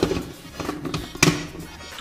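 A few sharp knocks of a hard plastic container being handled, the loudest a little past a second in, over background music.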